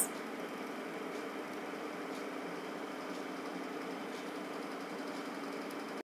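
Steady low background hum with no speech, even and unchanging, with a few faint ticks.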